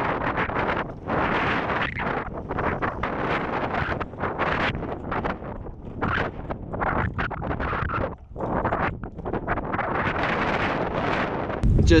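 Gusty wind buffeting the microphone, a rough noise that swells and drops in uneven gusts.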